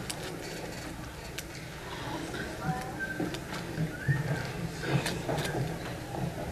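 Audience murmur of faint scattered voices in a hall, with footsteps and small knocks throughout, a little louder about four to five seconds in.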